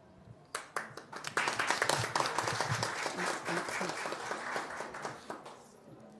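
Audience applauding in a hearing room: a few claps start about half a second in, build into steady applause, and die away near the end, welcoming a guest just invited to the panel.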